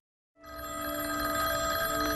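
Telephone bell ringing. It starts about half a second in and holds a steady ring of several bell tones.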